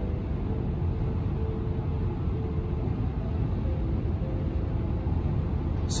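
Steady low road rumble inside a car's cabin while the car drives along a highway at speed.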